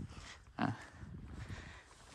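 Quiet outdoor background with one short spoken word about half a second in.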